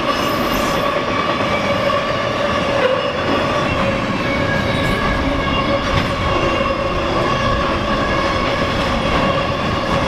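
Double-stack intermodal freight cars rolling past close by, a loud steady rumble with a continuous high-pitched wheel squeal over it.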